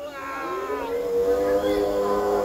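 Recorded dinosaur call from the ride's animatronic: a call that falls in pitch, then a long, held call from about half a second in.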